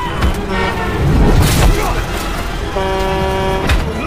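A truck horn blows one steady note for about a second, about three-quarters of the way in. Around it are shouts, sharp blows and the noise of passing traffic.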